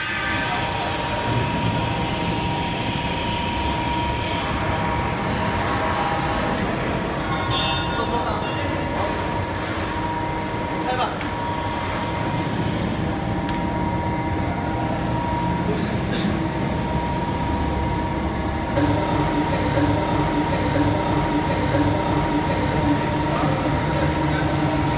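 Kraft paper slitter rewinder running: a steady mechanical rumble of rollers and drives with a thin, even whine above it. About 19 s in the drone grows a little louder and deeper.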